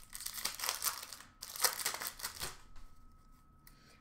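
Hockey trading cards being handled and flipped through by hand, with two stretches of rustling in the first two and a half seconds, then quieter.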